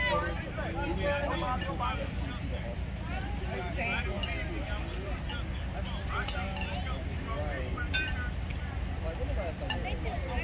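Scattered distant voices of spectators and players chattering, over a steady low rumble.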